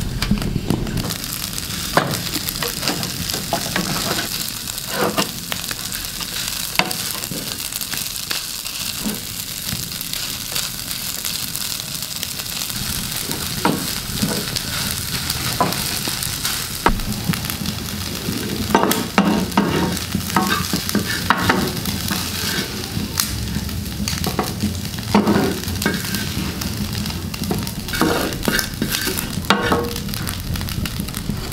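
Crumbled mull dough frying in a black iron pan with a steady hiss, stirred and scraped by a wooden spatula that clicks and taps against the pan many times.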